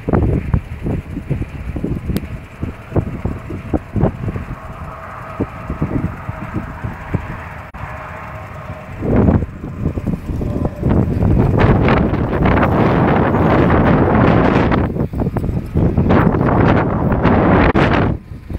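Wind rumbling on a phone microphone, mixed with handling and walking noise over crop stubble; it becomes louder and more constant from about nine seconds in.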